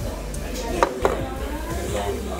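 Two quick, sharp knocks about a second in, a fraction of a second apart, like hard objects set down or tapped on a table, over faint background talk.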